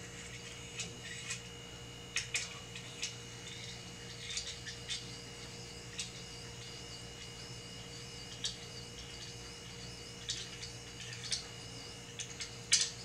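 Faint, scattered clicks and light ticks of small threaded metal telescope adapters being turned and handled in the hands, over a steady background hum.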